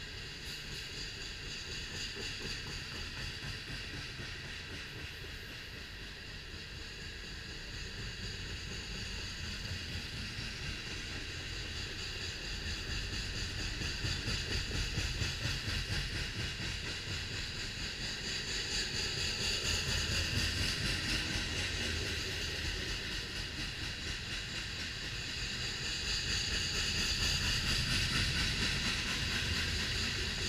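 Covered hopper cars of a BNSF freight train rolling past on the rails: a continuous low rumble of wheels with a steady high hiss above it. The loudness swells and eases gently several times.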